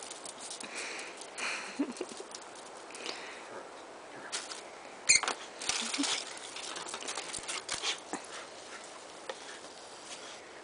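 A dachshund and a boxer scuffling and pattering about on a brick patio, claws clicking, while being handed chew treats. A short, sharp, high-pitched sound comes about five seconds in.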